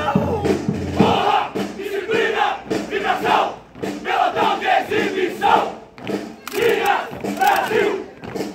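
A large group of soldiers shouting a marching chant in unison, in short rhythmic bursts about once a second.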